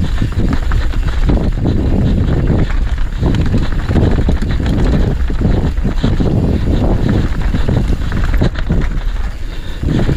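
Mountain bike rolling fast down a dirt trail: wind buffets the camera microphone over a steady tyre rumble, with frequent knocks and rattles as the bike goes over bumps.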